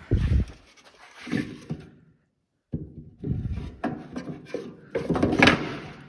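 Knocks and thumps of a wooden hive box frame with a wire-mesh floor being handled and set in place: a low thump at the start, then a run of sharp knocks in the second half. A little after two seconds in the sound cuts out completely for about half a second.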